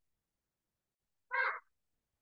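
One short call lasting about a third of a second, near the end of an otherwise silent stretch.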